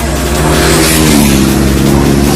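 Motorcycles running through a bend together, their engine notes rising a little about a second in as they accelerate out of the corner.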